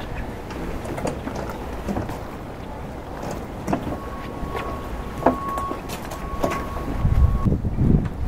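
Fabric boat cover rustling and scuffing as it is pulled back off an aluminium boat, over a steady wind rumble on the microphone that grows stronger near the end. A faint, steady high tone sounds from about halfway through until shortly before the end.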